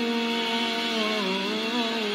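A man singing a hymn into a microphone, holding one long note that wavers slightly a little past halfway.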